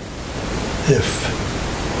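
Steady hiss of background noise, loud and even, with a man's single short spoken word about a second in.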